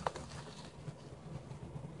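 Faint rustling and light handling of a sheet laid over a slab of rolled-out clay as it is lifted, flipped and smoothed by hand, with one short tap near the start.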